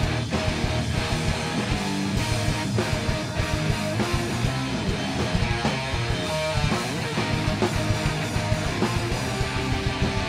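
A live rock band playing loud and steady, with electric guitars, bass and drums.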